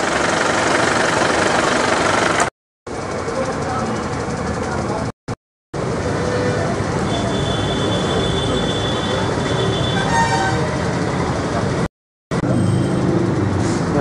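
Loud, noisy field-recording background with indistinct voices, cut off abruptly three times by short silent gaps.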